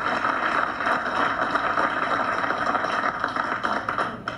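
A roomful of people applauding steadily, the clapping easing off right at the end.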